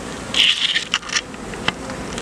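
Honey bees buzzing in a steady hum around an opened backyard hive and its bee escape board. A short rustling noise comes about half a second in, and there are a couple of faint clicks.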